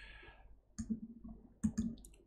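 A few soft clicks: one about a second in, then two close together near the end.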